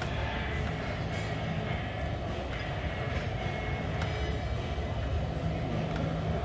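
Steady low rumble of gym room noise, with a few faint ticks.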